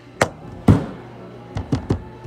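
Knocks and bumps against the hollow metal interior of an empty IDYLIS chest freezer: one about a fifth of a second in, the loudest with a deep boom and short ring just after, and a quick run of three near the end.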